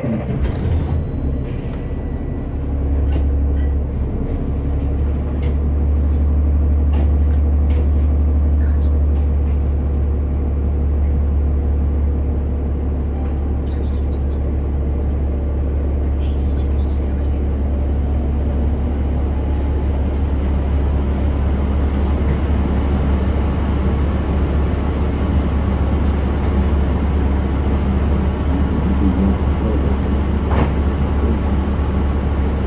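City transit bus engine idling while stopped, a steady low rumble with occasional faint clicks.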